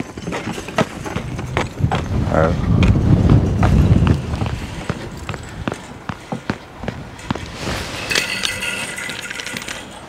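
Footsteps crunching and scraping on icy, snow-crusted ground, heard as many irregular sharp clicks. A low rumble of wind on the microphone swells about two seconds in and fades after about four.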